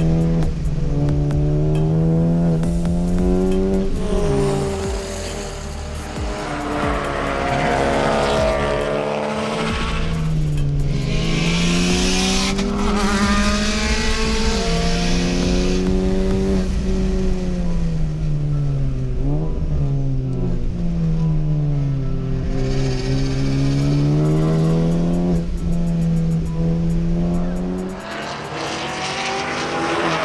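Honda Civic Type R's turbocharged four-cylinder engine being driven hard on track. Its pitch climbs, drops sharply at each shift and falls away under braking, over and over.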